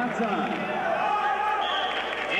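Speech only: a man talking, with no other sound standing out.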